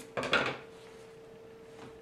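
A brief metallic clatter about a quarter second in, as of metal sewing scissors being put down on a wooden table, then quiet room tone with a faint steady hum.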